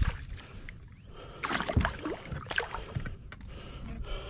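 Water splashing at a kayak's side as a hooked snook thrashes at the surface and a hand reaches into the water for it, with the louder splashes coming around the middle.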